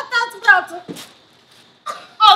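A woman's voice making short wordless cries that trail off within the first second, followed by a sharp click and a brief lull.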